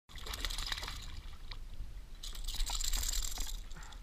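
A hooked peacock bass thrashing and splashing at the water's surface, in two spells of splashing.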